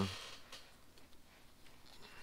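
Faint handling sounds of a plastic quick-release helmet buckle and nylon chin strap being worked by hand: light rustling with a few soft clicks.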